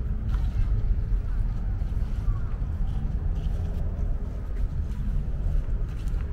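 Outdoor park ambience, mostly a steady low rumble, with faint far-off voices.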